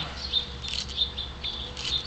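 Small birds chirping: short high chirps repeating several times a second, with louder clusters near the middle and near the end.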